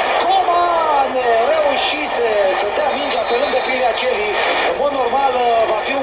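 A man's voice giving football match commentary, speaking without a break, played through a television speaker.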